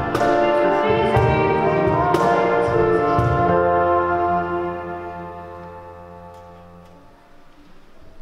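Church band of electric keyboard with violin and cello playing the last bars of a hymn: a few struck chords, then a final chord held over a steady bass, fading out and ending about seven seconds in.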